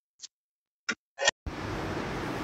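A few short clicks as the car's ignition is switched on, the last the loudest. A steady low background noise sets in about one and a half seconds in.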